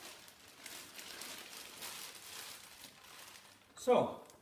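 Thin plastic bag being handled, crinkling and rustling on and off. A man says a short word just before the end.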